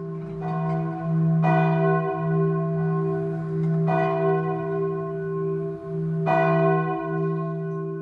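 A deep bell struck about four times, a couple of seconds apart, each stroke ringing out over a steady low drone, as a music bed under a title sequence.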